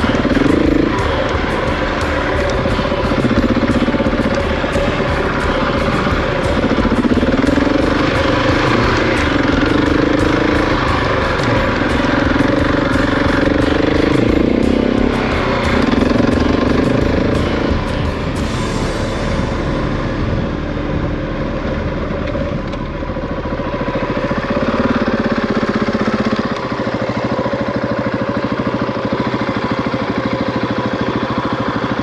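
Husqvarna 701 single-cylinder dirt bike engine running while riding, revs rising and falling through the gears.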